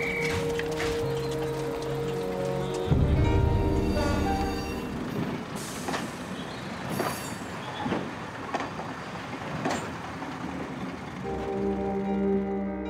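Background music, then about three seconds in a sudden loud low train rumble. It is followed by the noise of a train moving along the track, with scattered clanks and knocks, before the music returns near the end.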